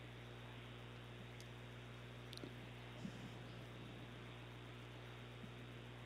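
Near silence: a faint, steady low hum and hiss on the broadcast line, with a couple of faint clicks about halfway through.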